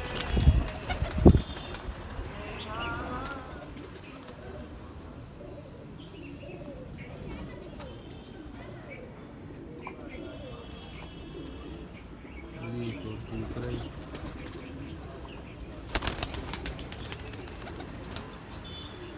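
Domestic pigeons flapping their wings in a wire-mesh loft: loud wing claps twice in the first second and a half and again about two seconds before the end. Low pigeon cooing runs in between.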